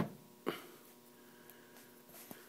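Quiet room tone with a faint steady mains hum, broken by one brief soft sound about half a second in and two tiny ticks near the end.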